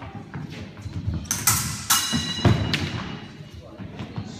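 Fencers' footwork stamping and thudding on a wooden floor, with a flurry of clatter and a brief metallic ring about two seconds in as the épée blades meet.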